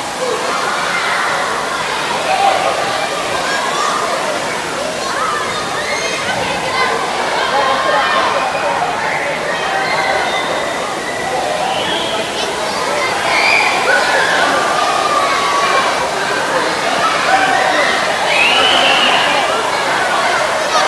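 Crowd din at an indoor water park: many overlapping voices and children's shouts over the steady rush and splash of pool water. It is loud throughout.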